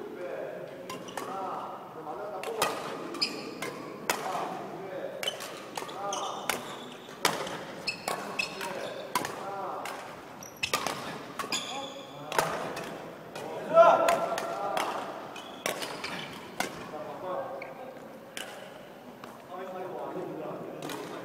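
Badminton rackets striking shuttlecocks in a fast coaching drill: sharp, irregular hits about once a second, with the loudest about fourteen seconds in, echoing in a large gym hall. Voices are heard between the hits.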